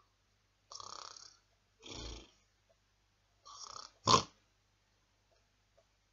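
A man fake snoring: three breathy snores about a second apart, then a short loud burst about four seconds in.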